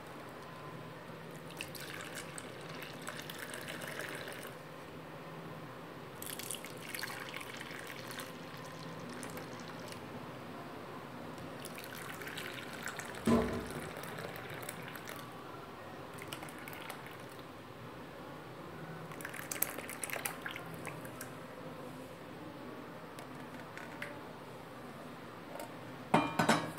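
Liquid agar-agar jelly mixture poured from a pot into plastic bowls, trickling and splashing in several separate bouts, with one sharp knock about halfway through.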